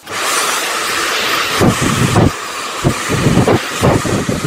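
A hand-held hair dryer switched on abruptly and blowing steadily, a loud full-range rush of air. There are a few uneven lower surges in the second half as the airflow is worked over wet hair with a round brush.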